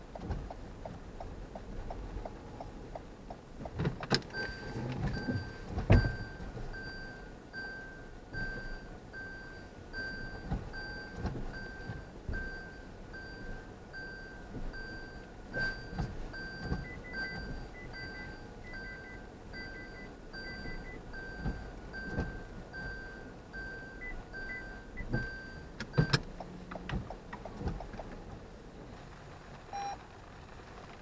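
A car's in-cabin reverse warning beeper repeating at an even pace for about twenty seconds, with a faster, higher beep from the parking sensors cutting in twice, as the car backs out of a space. Sharp clicks come as the beeping starts and when it stops.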